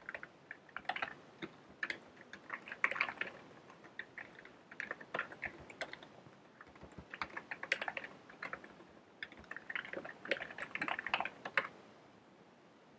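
Typing on a computer keyboard: quick runs of keystrokes separated by short pauses, stopping just before the end.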